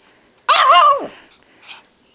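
A small dog gives one short, high bark that rises and then falls in pitch.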